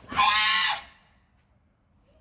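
A karateka's kiai: one loud, high-pitched shout of about half a second, near the start, marking a focus technique in the kata Gankaku.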